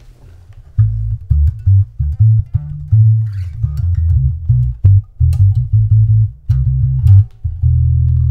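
Electric bass guitar, a Rickenbacker-style bass fitted with a humbucker at the bridge, played through the Holt2 resonant lowpass filter set to full resonance and eight poles. A quick riff of deep notes starts about a second in, with everything above the lowest range cut away and only faint string clicks on top, and ends on a longer held note.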